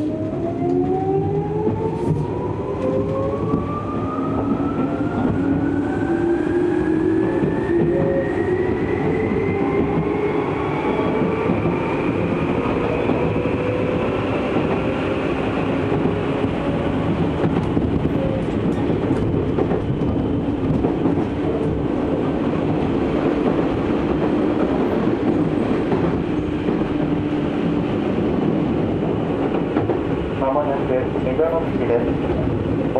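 Tokyu 8500 series electric train accelerating away from a station, heard from inside the car. Its traction motors whine, several tones rising together in pitch for about fifteen seconds, then levelling off over steady running noise as the train reaches speed.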